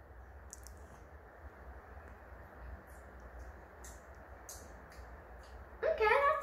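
Quiet sounds of a child drinking milkshake from a glass: a few faint, short clicks over a low steady hum.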